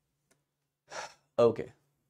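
A man's short breath about a second in, followed by a brief voiced sound, like a clipped word or grunt, half a second later.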